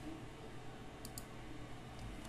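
Two faint, quick clicks about a second apart from the start, from working a computer's controls, over a quiet steady background.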